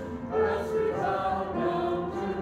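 A small choir singing in harmony, several voices holding notes together and moving to new pitches every half second or so.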